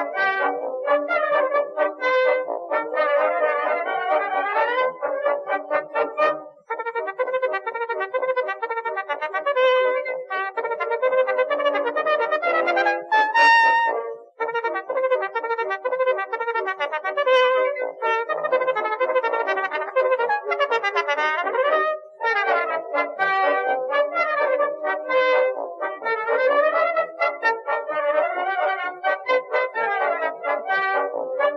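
Instrumental background music with a melody carried by a wind instrument, dipping briefly three times.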